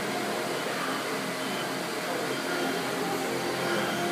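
Steady background noise of a gym, a fan-like hiss and hum with faint pitched tones over it; no clank of weights stands out.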